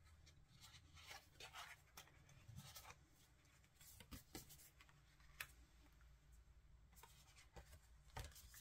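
Near silence with faint paper rustles and a few light taps: tarot and oracle cards being handled.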